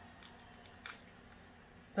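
An egg being broken open over a bowl of dry cake ingredients: one short, soft crackle of the shell about a second in, against quiet room tone.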